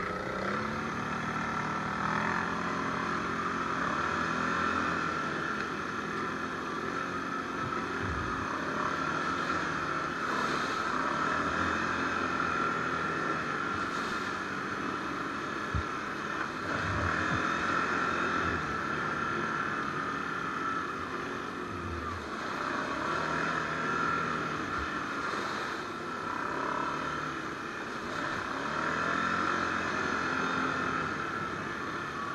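Can-Am ATV's V-twin engine running under way on a rough dirt trail, its note rising and falling with the throttle. A few short low thumps come through as the machine rides over bumps.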